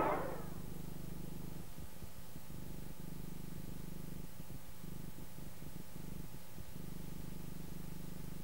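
Crowd chatter fades out in the first half second, leaving a steady low electrical hum with faint hiss on the soundtrack.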